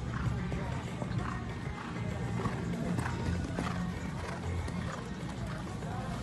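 A horse's hoofbeats as it canters on a sand arena, over background music and voices.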